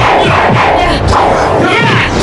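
Several voices shouting battle cries over one another, with a loud yell near the end.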